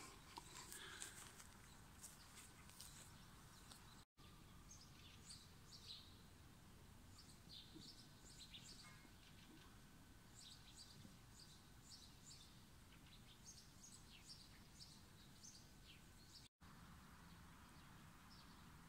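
Near silence outdoors, with faint small birds chirping here and there in the background. The sound drops out completely twice, very briefly.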